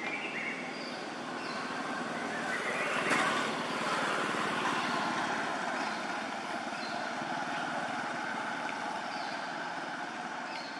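Steady outdoor background noise, a rushing haze that swells about three seconds in and then eases, with a few faint short high chirps.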